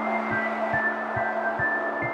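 Instrumental music: a steady low pulse a little over two beats a second under a held low note, with short high notes stepping in pitch above.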